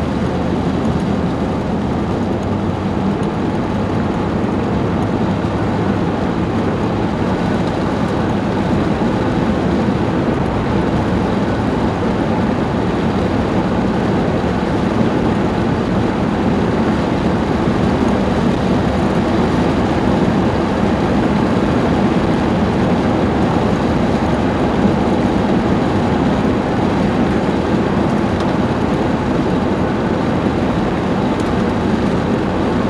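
Steady road and engine noise of a car driving along at an even speed: a constant low rumble with tyre hiss, with no change in speed.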